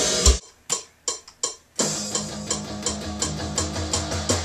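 Band music with drum kit and guitar: the full band stops abruptly about half a second in, leaving a few lone drum hits, then a steady low bass line and guitar come back in with the drums about two seconds in.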